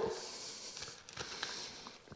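Utility knife shaving a bevel on the edge of a small plasterboard piece, a faint scraping hiss in the first second. A few light ticks of the blade and board being handled follow.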